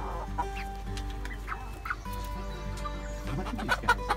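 Backyard hens clucking in short calls, the calls getting busier near the end.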